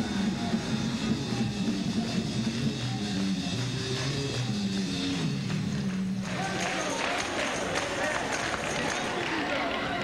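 Live gospel praise-break band music with a moving bass line, which stops abruptly about six seconds in and gives way to the congregation's voices and hand-clapping.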